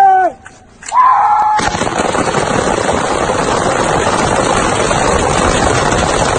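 A line of rifles firing together in rapid, continuous volleys, starting about a second and a half in and going on without a break.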